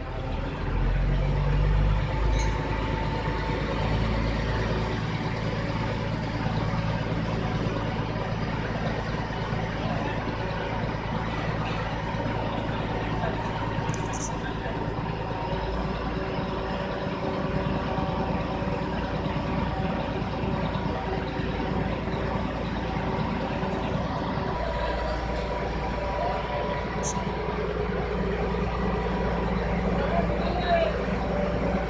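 Crawler crane's diesel engine running steadily under load while it lifts and sets a precast concrete column, its note changing a few times: about a second in, about halfway through and again near the end.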